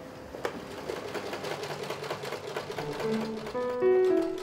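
Home sewing machine stitching seatbelt webbing, a fast even run of needle clicks. Music comes in about three seconds in.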